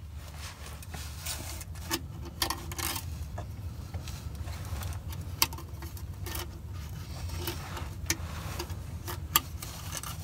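Small, scattered clicks and light scrapes as a Ford FMX automatic transmission's filter and its retaining clip are pushed and snapped into place on the valve body by hand, over a steady low rumble.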